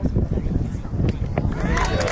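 Outdoor crowd voices over a steady rumble, with a sharp pop about one and a half seconds in: a thrown baseball smacking into the first baseman's leather glove.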